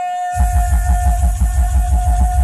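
Loud reggae sound-system music: a held electronic tone over a fast throbbing bass pulse that drops in about a third of a second in, after a brief cut of the bass.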